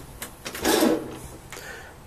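Pull-out kitchen faucet spray head being drawn out of the spout on its hose: a click near the start, then a short sliding noise as the hose feeds out.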